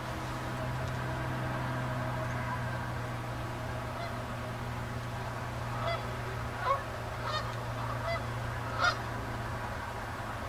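Geese honking: about five short calls, starting a little past halfway and spaced under a second apart, over a steady low hum.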